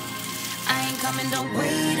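A seasoned salmon fillet sizzling in hot oil in a frying pan, a steady hiss, under background music with singing.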